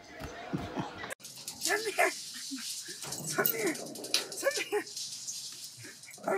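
A small dog giving a string of short yips and whines, each rising and falling in pitch, about half a dozen over a few seconds.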